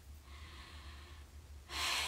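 A woman's quick intake of breath near the end, before she speaks again, after a quiet pause with faint breathing. A steady low hum runs underneath.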